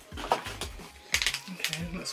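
Packaging being opened by hand, with a few short, sharp crinkles and clicks about a second in, as a microfibre makeup-remover cloth is taken out.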